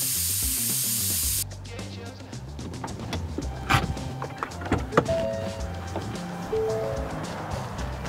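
Air hissing out of an off-road tyre's valve stem as the tyre is let down to about 20 psi for driving on sand. The hiss is loud and steady and cuts off suddenly about a second and a half in. Music plays underneath, with two sharp clicks later on.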